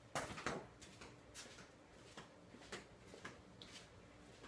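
A few faint knocks and taps from someone moving about and handling things, the two loudest just after the start, then scattered lighter taps.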